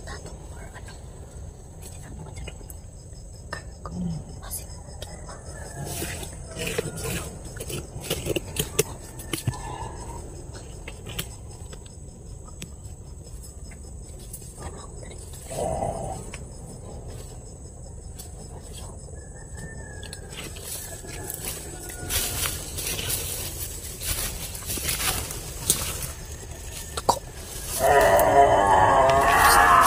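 Rustling and crackling of people moving through dense undergrowth and dry leaves, growing busier near the end, with a few brief hushed voice sounds. A faint steady high-pitched insect drone runs underneath.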